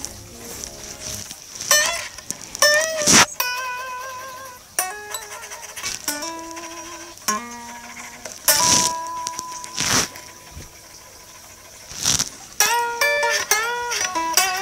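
Harley Benton S-620 electric guitar played in short licks of single picked notes, some with a wavering vibrato and some bent upward near the end, with sharp pick attacks between them.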